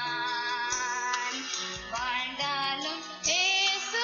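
A young girl singing a devotional song into a microphone over instrumental backing, in long held notes that waver with vibrato towards the end.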